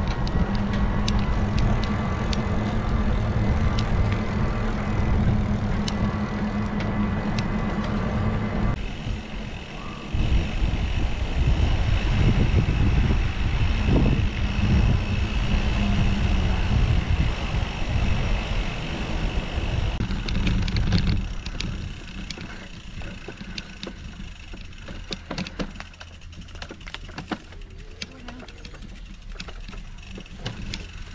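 Riding noise from a camera on a moving mountain bike: wind rushing over the microphone and tyres rolling on tarmac, with a steady hum under it. About two-thirds of the way through it drops to a quieter background with scattered clicks.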